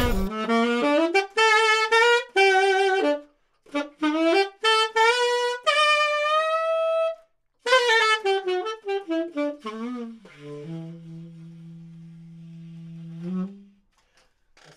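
Solo tenor saxophone playing a few short phrases of separate notes with short pauses between them, some notes wavering, ending on a long low note held for about three seconds that swells just before it stops.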